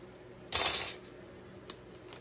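Scissors snipping once through the end of a ribbon: a short, crisp cut about half a second in, then a faint click near the end.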